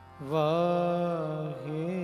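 A male kirtan singer starts a long held sung note about a quarter second in, the pitch sliding into place and then sustained, with a brief dip near the end.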